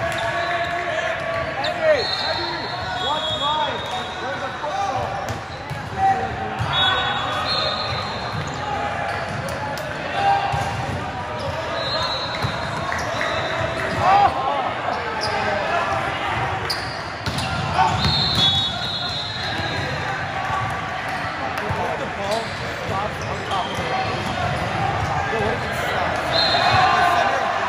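Volleyball game in a large indoor gym: steady chatter and calls from players and spectators, with a sharp smack of the ball being hit or bouncing every few seconds and short high squeaks mixed in.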